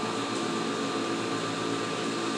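Steady hum and hiss of background machinery, with faint, steady high whine tones above it.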